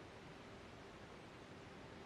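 Near silence: a faint steady hiss with a faint low steady hum.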